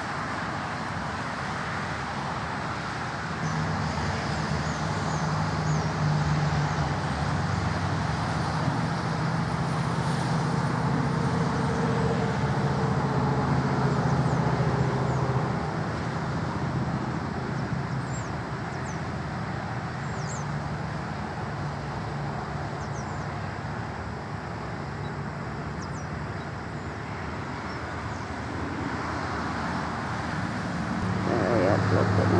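Road traffic noise: a steady rush of vehicles, with a motor vehicle's low engine hum standing out from a few seconds in until about halfway through.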